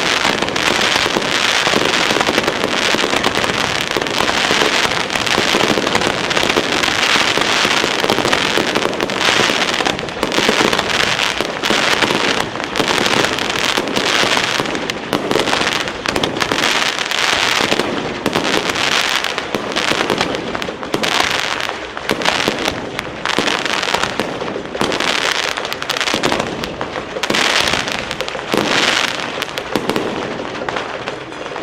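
Fireworks going off: a loud, dense crackling of countless small pops, near-continuous at first and breaking up into more separate clusters of bursts after about ten seconds.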